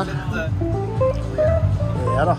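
Electric guitar played through an amplifier: a run of single picked notes climbing step by step in pitch over about a second and a half, with low notes held underneath.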